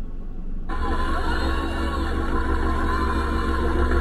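Playback of a live gospel concert recording that cuts in suddenly about a second in: sustained chords over a deep bass. Before it there is only a low hum.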